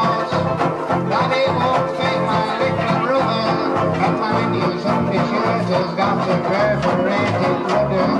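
A group of banjo ukuleles strummed together in a brisk, even rhythm, with a man singing along into a microphone.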